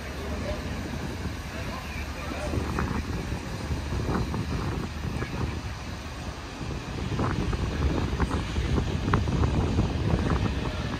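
Outdoor harbour ambience: wind buffeting the microphone over indistinct background voices, with the wind noise growing stronger in the second half.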